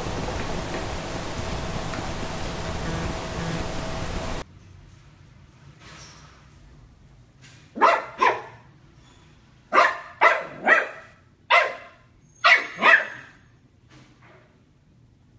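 Dachshund puppy barking at its own reflection in a mirror: about eight short, sharp barks in pairs and short runs through the second half. Before that, a steady hiss with a faint hum.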